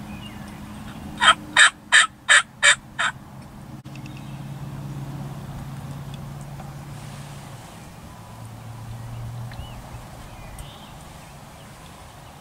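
A run of six loud turkey yelps, evenly spaced about three a second, lasting about two seconds.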